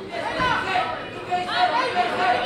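Crowd chatter: many voices talking and calling out at once.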